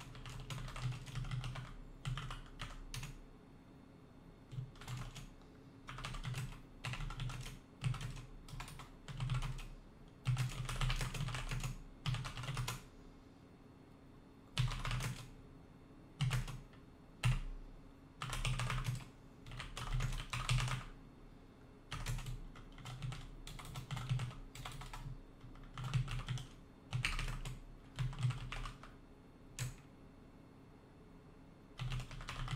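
Typing on a computer keyboard in short bursts of keystrokes, each a second or two long, with brief pauses between them.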